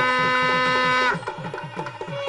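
Indian devotional music: a single held note with many overtones, cutting off about a second in, over an even hand-drum rhythm of about five strokes a second.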